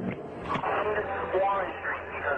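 Speech only: a person talking in a narrow-band, radio-like recording over a steady low hum, with one brief click about a quarter of the way in.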